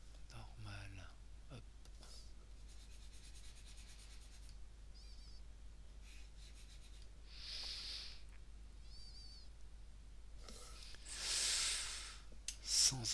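Two breathy exhalations close to the microphone, the louder one near the end, over a steady low electrical hum. There is a brief mutter at the start and stretches of faint rapid ticking in between.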